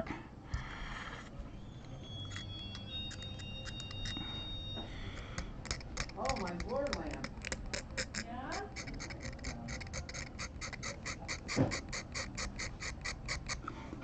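A metal pick scraping a guitar nut in quick, even strokes, making a run of sharp clicks at about five a second through the second half.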